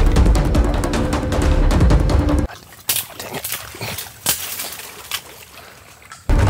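Background music with a drum beat that cuts off suddenly about two and a half seconds in, followed by a few separate wet squelches of feet pulling through thick, soft mud.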